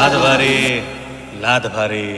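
A man's voice in a drawn-out, chant-like delivery over fading background music with no beat.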